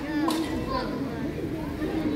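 Market crowd chatter: several voices talking at once in the background, none of them clear.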